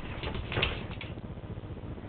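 Small puppy snarling in a few short, sharp bursts during the first second, guarding its food from a foot, then only a low steady background.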